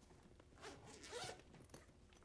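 A zipper on a bag being pulled, faintly, in two short strokes about half a second and a second in.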